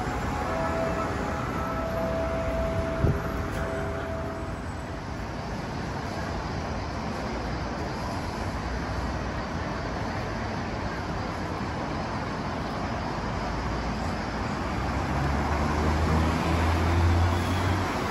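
City street traffic noise, a steady wash of passing road vehicles, with a few faint held tones in the first few seconds and a sharp click about three seconds in. Near the end a car engine close by grows louder with a low hum.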